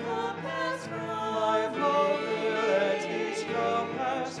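A small mixed group of voices singing a slow sacred song in harmony, holding each note for about half a second to a second.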